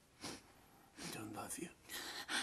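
Tearful, whispered voice: a short sharp breath, then hushed, breathy whispering from about a second in.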